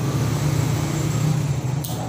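Corded electric hair clipper running with a steady low hum as it is passed over a shaved scalp, with a brief sharp click near the end.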